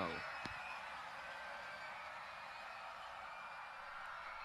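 Faint steady hiss of a night-at-sea sound bed, with faint, high, wavering cries far off: the people in the water calling out.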